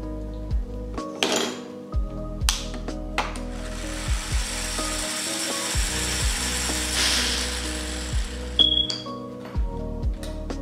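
Sharp plastic clicks of Lego Technic parts and Power Functions cable connectors being handled and pressed together, the loudest near the end with a brief high squeak. Background music plays throughout, and a broad hiss swells in the middle and fades.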